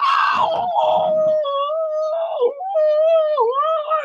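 A man's voice holding one long, high vocal note, mostly steady in pitch, with two brief downward dips in the second half before it ends at the close.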